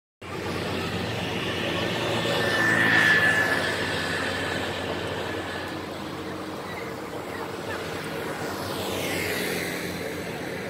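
Road traffic passing close by: a vehicle's engine and road noise swell to their loudest about three seconds in and fade, and another vehicle passes near the end.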